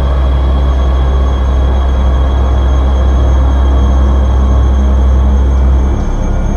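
Ambient experimental electronic music: a loud, deep bass drone under a dense, rumbling noise texture. The drone cuts off abruptly shortly before the end.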